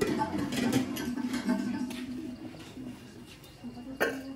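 Indistinct voices of people talking, with a few light clicks in the first second and a half.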